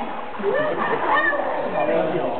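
Water splashing as a person moves through a pool, under voices talking.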